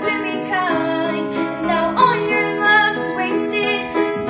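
A girl singing while accompanying herself on a grand piano: a sung melody with gliding notes over sustained piano chords.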